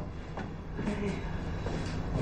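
A low steady rumble with a few faint clicks over it.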